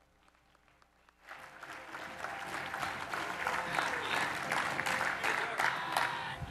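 Audience applauding, starting about a second in and building to a steady level.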